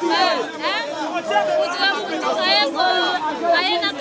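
A woman speaking animatedly, with other voices in the crowd chattering around her.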